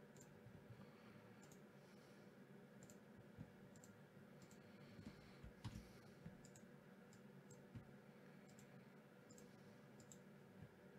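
Near silence with faint, scattered clicks of a computer mouse, about a dozen spread unevenly through the stretch.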